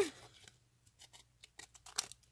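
Small scissors cutting a flower decal out of a paper-backed water-slide decal sheet: a run of faint, quick snips, with a sharper click near the end.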